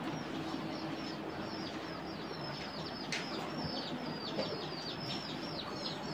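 Small birds chirping steadily: short, high chirps that slide downward, several a second. A single sharp click is heard about three seconds in.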